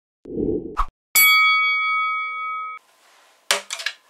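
Intro sound effect: a short low whoosh, then a single bell-like metallic clang that rings on one steady pitch for about a second and a half and cuts off abruptly. A sharp click follows near the end.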